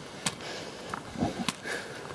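Handling noise from a handheld phone being moved while walking: rustling with two sharp clicks, one just after the start and one about a second and a half in.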